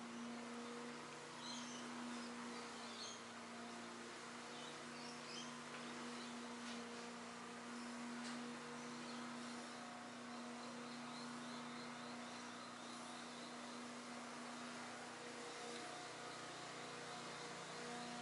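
Faint room tone: a steady low hum over a light hiss.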